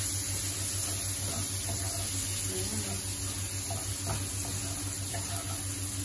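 Meat pieces sizzling in oil in a nonstick wok as a wooden spatula stirs them, a steady frying hiss with a few light scrapes of the spatula; the meat is being browned until crispy.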